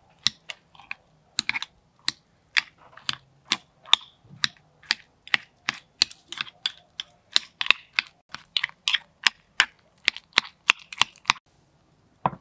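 Metal spoon clicking sharply and repeatedly against a marble mortar as avocado flesh is scooped and cut into it, about three irregular clicks a second.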